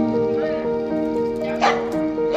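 A dog barking once, sharply, near the end, over steady background music.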